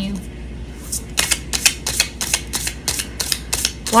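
A tarot deck being shuffled by hand: a quick run of crisp card clicks, about five a second, starting about a second in and stopping just before the end. Under it runs a steady low hum from a washer and dryer, which are so loud.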